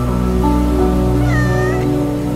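A domestic cat meowing once, a short call about one and a half seconds in, over slow ambient music with long held notes.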